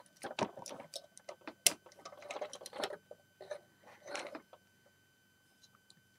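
Plastic clicks and rattles of LEGO Hero Factory figure parts (ball joints, armour and a saw-blade piece) as the figures are handled and posed. The clicks come irregularly and stop about four and a half seconds in.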